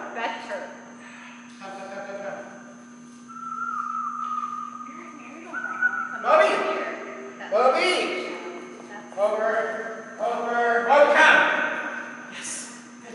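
A man's voice calling out in short bursts, strongest in the second half, over a steady low hum. A thin, steady tone is held for about two seconds near the middle.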